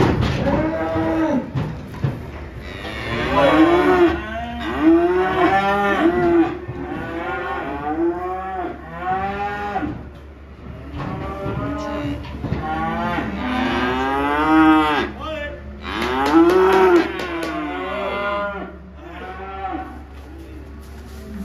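Several Limousin calves bawling over and over, a call every second or so with some overlapping. Each call rises and then falls in pitch.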